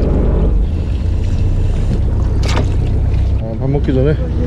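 Steady low rumble of a small fishing boat's engine, with wind on the microphone. There is a brief sharp clatter about halfway through.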